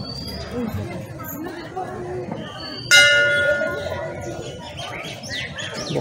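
A metal temple bell is struck once about three seconds in. Its several clear tones ring out and fade over a second or two, over the murmur of a crowd's chatter.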